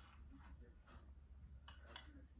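Two light clinks of a metal spoon against a bowl near the end, over otherwise near-silent room tone.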